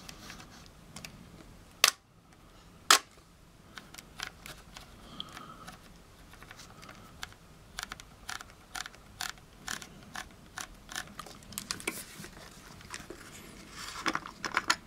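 Nikon DSLR shutter firing a one-second exposure: a sharp clack as the mirror and shutter open, and a second clack exactly a second later as they close. After it come many small, fairly regular clicks of the camera's command dial being turned through its detents to change the aperture setting.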